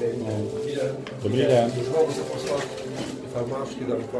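Speech only: people talking, the words indistinct.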